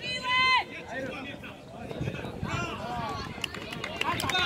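High-pitched children's voices shouting on an outdoor football pitch: one loud, drawn-out shout at the start, then scattered shorter calls.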